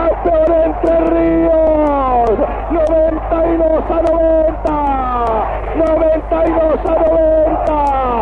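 A sports commentator's excited, drawn-out shouting on an old basketball broadcast recording, the voice held on long notes that slide down in pitch again and again.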